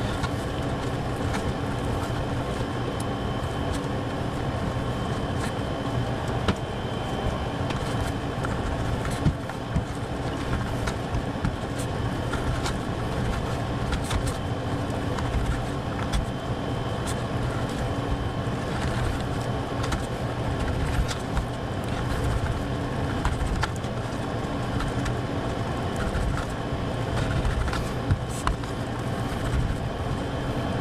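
Steady machine hum with a faint high whine, broken by a few sharp clicks of a knife tip against a plate as raw steak is cut into small pieces.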